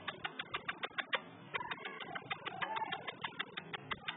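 A run of rapid, even clicks, about eight a second, with a short break just after a second in and a faint squeak near the middle.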